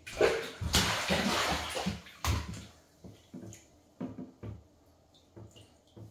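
A baby splashing in bathwater: a loud burst of splashing for about two seconds, a sharp knock just after, then a few smaller splashes and taps.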